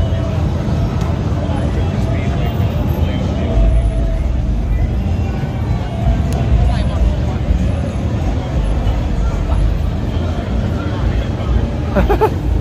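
Traffic driving through a busy city intersection: a steady low rumble of car engines and tyres, with the talk of people nearby mixed in.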